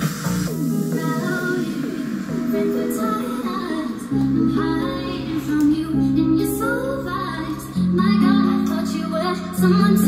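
Pop music with a female voice singing, played through a Kenwood SJ7 mini hi-fi system and its bookshelf speakers; deep sustained bass notes come in about four seconds in and swell louder near the end.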